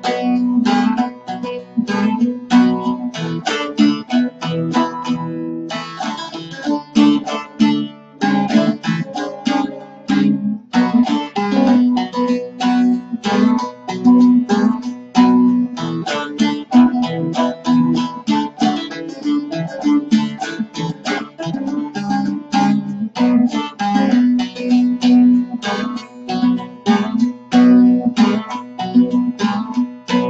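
Bağlama (long-necked Turkish saz) played with a plectrum: a steady run of quick picked notes of a deyiş melody over a low ringing of the strings, played instrumentally without singing. The playing stops at the very end and the strings ring on.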